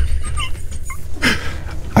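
Men laughing quietly in short, breathy, high-pitched bursts over a steady low hum.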